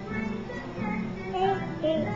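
Children's music with a high singing voice, playing steadily from a TV programme.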